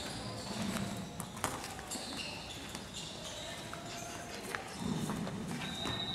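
Wrestlers scuffling on a gym mat: scattered thumps and shuffling, with faint voices in the background.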